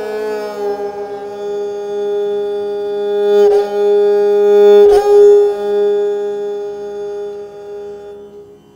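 Esraj, a bowed North Indian string instrument, playing a slow aalap in Raag Puriya Dhanashri: one long held note over a steady lower tone. The bow re-attacks the note twice, about three and a half and five seconds in, and the sound then slowly fades.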